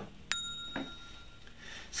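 A single bright bell ding about a third of a second in, ringing out for about a second.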